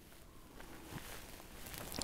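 Faint, quiet background noise with a couple of light taps.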